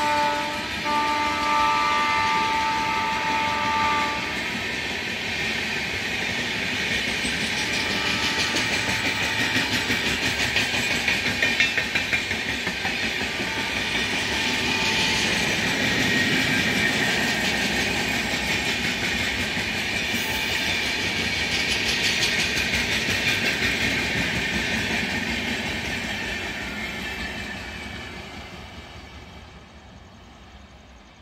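Passenger express hauled by a WAP-7 electric locomotive running past. The locomotive's horn sounds for about the first four seconds. After that comes a steady clickety-clack of the coaches' wheels over the rail joints, which fades away near the end as the train draws off.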